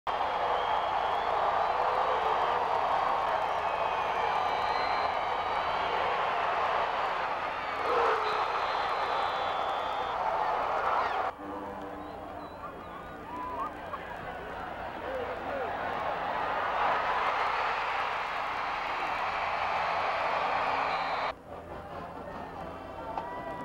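A large stadium crowd cheering and shouting, a dense wash of many voices. It breaks off abruptly about eleven seconds in and drops to quieter crowd noise, which swells again before another abrupt cut near the end.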